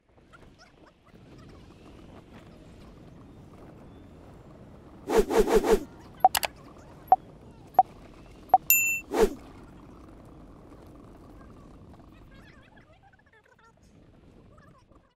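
Faint steady background noise, broken about five seconds in by a quick run of four pitched pulses. A few sharp clicks and a bright bell-like ding follow in the middle, the pop-up sound effects of a like-and-subscribe animation.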